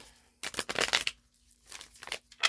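A deck of tarot cards being shuffled by hand: a half-second burst of flicking cards about half a second in, then a fainter rustle of cards near the end.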